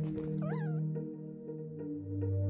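A puppy gives one short, wavering whine about half a second in, over soft background music.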